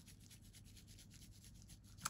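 Soft nail dust brush sweeping quickly back and forth over a glitter-coated nail tip, brushing off loose glitter: faint rubbing strokes, about ten a second.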